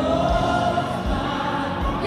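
Gospel worship song: a choir holding a long sustained note over the band, with a low beat underneath.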